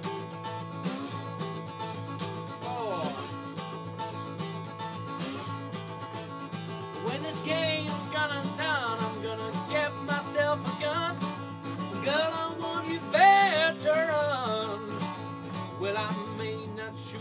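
Live acoustic country-blues music: an acoustic guitar played with a slide, with a man's voice sliding up and down over it in long drawn-out notes. The loudest swell comes near the end.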